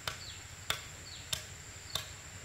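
Sharp clicks repeating evenly, about three in two seconds, each followed shortly by a brief falling whistle. Beneath them runs a steady high-pitched insect drone.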